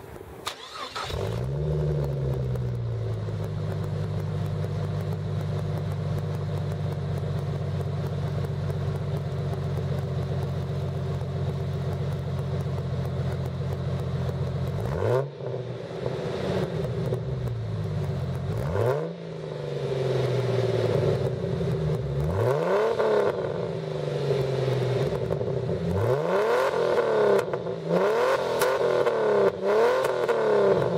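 A 1999 Jeep Cherokee's 4.0-litre straight-six through an APN header, high-flow cat and Magnaflow Magnapack muffler starts about a second in, flares and settles to a steady idle. From about halfway it is revved in short blips that rise and fall back to idle, coming closer together near the end.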